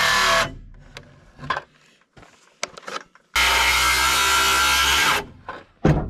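Cordless circular saw cutting through thick rough-cut lumber in two bursts. The first ends about half a second in, and the blade spins down with the motor's pitch falling. The second runs from a little past three seconds to about five seconds. A sharp click comes just before the end.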